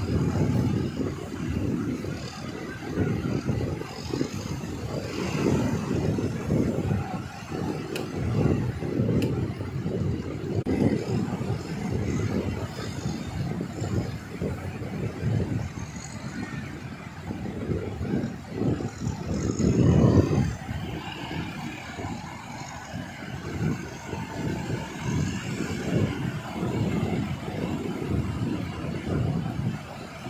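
Wind buffeting the microphone in irregular low gusts over surf breaking on the beach, strongest about two-thirds of the way through.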